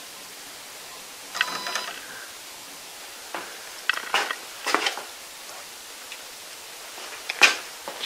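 Stepper motors of a 3018 desktop CNC router whirring with a steady high whine for about half a second as the bed is jogged a 10 mm step. Then several short clicks and knocks, the sharpest near the end.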